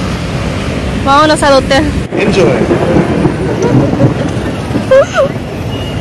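Steady city street traffic noise from passing cars, with short bursts of voices and a laugh over it.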